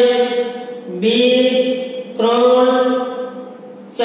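A voice intoning in long held notes at a nearly steady pitch, chant-like, in three phrases; a new phrase begins about a second in and another a little after two seconds, and that one fades away near the end.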